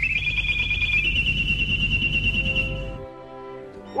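Old-radio sound effect: a high whistle that steps up and then holds steady over loud low crackle and rumble, as of a valve set being tuned. About three seconds in it gives way to a quieter steady hum.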